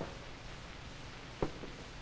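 A single light knock about one and a half seconds in, from demonstration equipment being handled on a table, over the steady hiss of an old recording.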